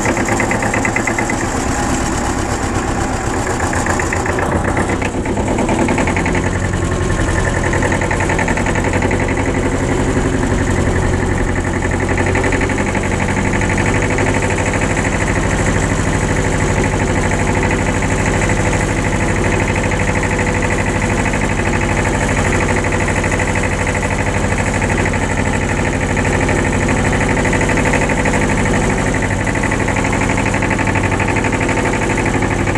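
Tractor engine running steadily under way, pulling a small trailer.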